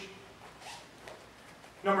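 Faint rustle of martial-arts uniforms and movement on the mat as two people get up and reset, with a soft swish about half a second in. A man starts speaking near the end.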